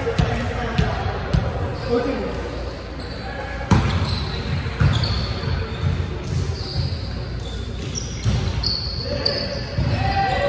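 Volleyball rally on a hardwood gym court: repeated thuds of the ball being struck, the loudest a little under four seconds in, with short high squeaks of shoes on the floor and indistinct voices, all echoing in the large hall.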